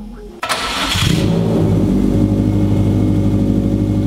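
The all-wheel-drive Miata's turbocharged engine is started cold: a short burst of cranking, then it catches about a second in and settles into a steady idle.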